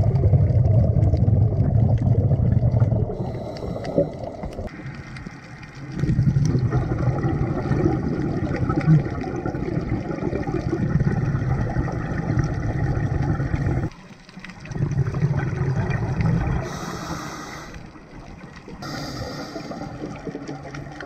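Scuba diver breathing through a regulator underwater: exhaled bubbles gurgle in long low bursts of a few seconds each, with brief hissing inhalations in the pauses near the end.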